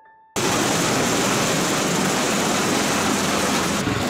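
V-22 Osprey tiltrotor running with its rotors turning: a loud, steady rush of rotor and turbine noise that starts suddenly about a third of a second in.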